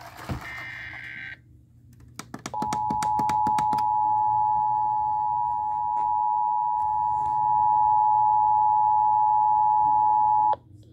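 Emergency Alert System broadcast through a radio: a screechy SAME digital data burst cuts off about a second and a half in, then after a quick run of clicks the steady two-tone EAS attention signal sounds from about two and a half seconds in, the signal that a warning message is about to be read.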